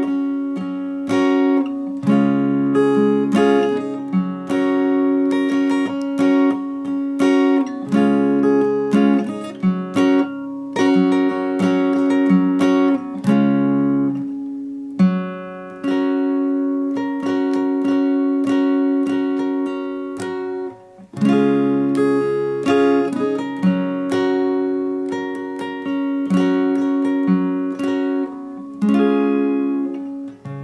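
Steel-string acoustic guitar, capoed at the fourth fret, played slowly. Each cycle starts with a picked root note on the D chord shape, let ring, then a run of up-and-down strums and a few down strums onto a briefly held A chord shape. The cycle repeats several times.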